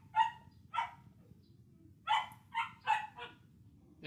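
Dry-erase marker squeaking on a whiteboard in six short, high-pitched squeaks, one for each pen stroke.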